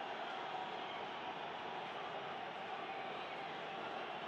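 Steady, even background noise of a football stadium crowd, low in a television broadcast mix with no sharp cheers or whistles.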